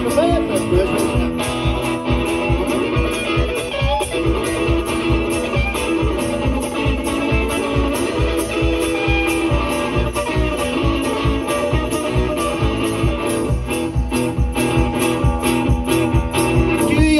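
One-man-band rockabilly played live: an electric guitar through an amplifier carries an instrumental break, over a steady beat from a foot-played bass drum and cymbal.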